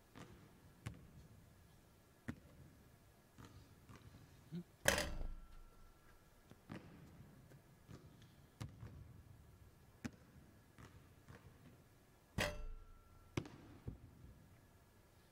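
A basketball striking hard surfaces in a quiet arena during free-throw shooting: scattered light knocks, with two louder hits about 5 and 12 seconds in that ring briefly.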